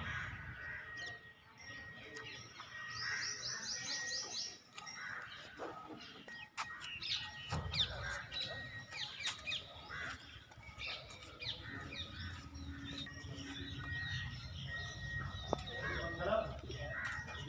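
Birds chirping in many short calls, with crows cawing among them; a quick trill about three seconds in, and the chirping busiest in the middle. A low rumble runs underneath.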